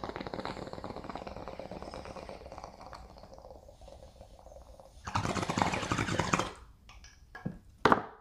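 Glass bong bubbling in quick, rattling bursts as smoke is drawn through its water, slowly getting quieter. About five seconds in comes a louder rush of air and bubbling lasting about a second and a half.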